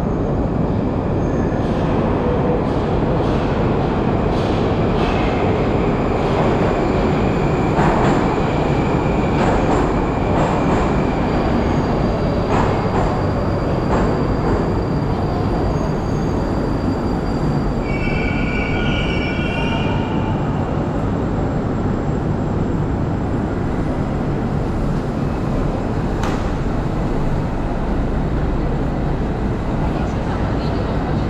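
Moscow Metro train running beside the station platform: a steady, loud rumble with thin high squealing tones from the wheels on the rails, and a few sharp clicks in the middle.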